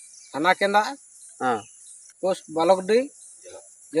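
Short phrases of a man's speech over a steady, high-pitched drone of insects.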